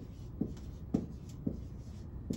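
Dry-erase marker writing on a whiteboard: short squeaking strokes, about one every half second.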